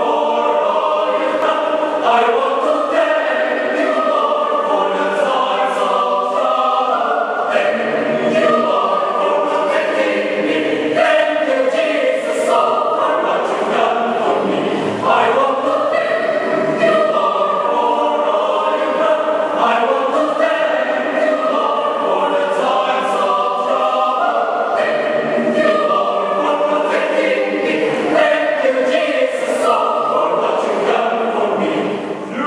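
Mixed choir of men and women singing a gospel song in several voice parts without accompaniment, steadily.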